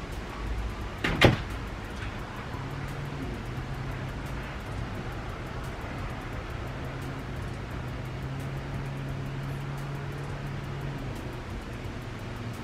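A single sharp, loud hit about a second in, then a steady low hum of a motor running.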